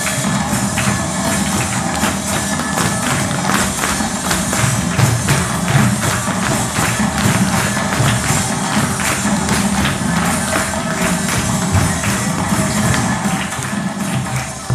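Chilean folk dance music for a cueca, with a steady, quick beat of tambourine and drum strikes.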